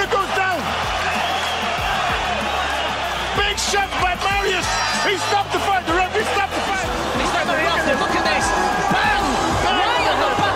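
Background music with sustained bass notes under an arena crowd's overlapping shouts and cheers after a knockout.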